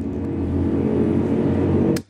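A low, sustained drone from the film score swells steadily. Just before the end a single sharp click cuts it off abruptly: the dry click of a shotgun trigger being pulled and the gun not firing.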